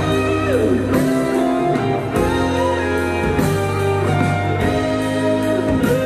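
Live band music led by a guitar, its notes bending in pitch over a steady bass line.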